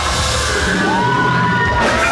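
Live band and DJ music with a heavy bass line, with crowd whoops and shouts over it; a sharp hit sounds near the end, where the bass drops away.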